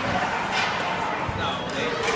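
Ice hockey play heard from rinkside: indistinct crowd chatter in the arena with a few sharp knocks of sticks and puck on the ice and boards.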